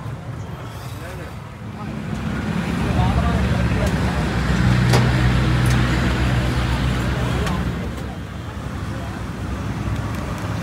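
A motor vehicle's engine passes close by on the road. The low rumble swells from about two seconds in, is loudest around the middle and fades away near the end, with faint voices underneath.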